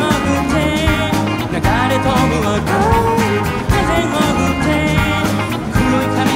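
A live rock band playing, with drums and strummed acoustic guitar, and a man singing the lead vocal over them.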